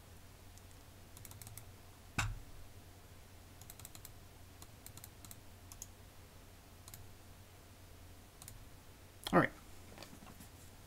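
Faint computer keyboard and mouse clicks: scattered single clicks and short quick runs of key taps, with one louder knock about two seconds in.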